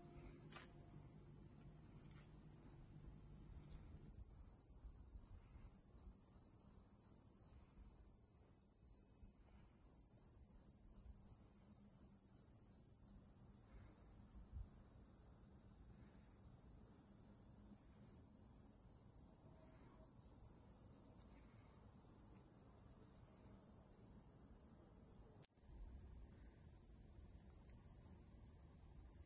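Insects chirring in a dense, steady, high-pitched chorus, with a sudden drop in level about 25 seconds in.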